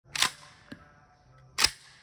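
Two single shots from an AR-15 rifle in .223, about a second and a half apart, each a sharp crack that dies away quickly, with a faint click between them.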